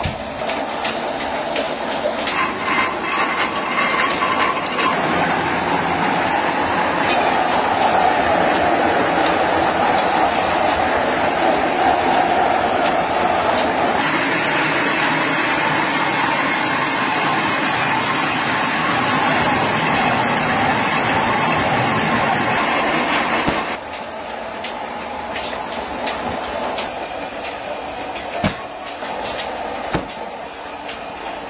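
Rotary veneer peeling lathe running as it peels a log into a continuous sheet of veneer: loud, steady machine noise. It drops lower about three-quarters of the way through.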